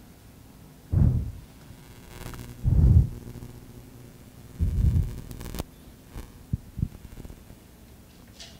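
Handling noise on a handheld microphone: three low, dull thumps about two seconds apart, followed by a few short sharp clicks.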